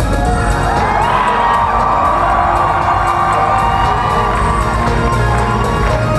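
Live concert music played loud over a hall PA, with a long held note that rises about a second in and holds until near the end, and the audience cheering over it.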